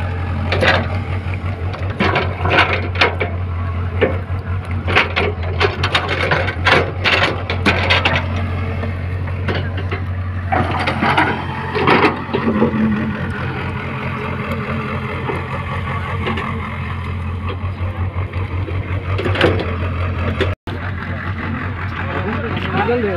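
An engine running steadily with a low drone throughout, under repeated short, irregular bursts of noise that are thickest in the first half.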